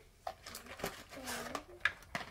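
A few light taps of small plastic toy pieces set on a wooden table, the sharpest near the end, with a soft voice sounding faintly in between.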